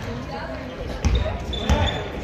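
A basketball bouncing on a wooden sports-hall floor, with two louder bounces about a second in and near the end, echoing in the large hall. Short high squeaks come through over the voices.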